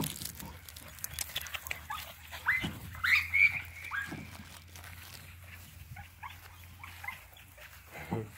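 American Bully puppies yipping as they play-fight: a string of short, high, rising yips, the loudest and longest about three seconds in, with fainter ones after.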